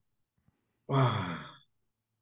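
A man's sighing 'oh', once, about a second in, falling in pitch.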